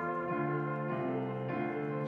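Grand piano playing the accompaniment on its own, the trumpet having dropped out right at the start, with the chords changing about twice a second.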